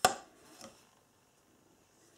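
A metal spoon scooping snow out of a glass bowl: one sharp clink as it knocks the bowl, then a fainter second tap just over half a second later.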